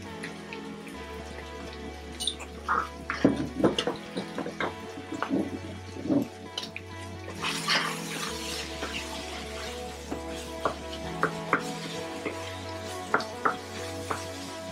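Background music with a steady bass line, over the scrape and knock of a wooden spoon stirring minced meat in a frying pan, in short irregular strokes.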